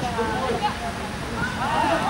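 Several voices calling out at a distance across a football pitch, with a couple of short shouts near the end, over a steady low noisy rumble.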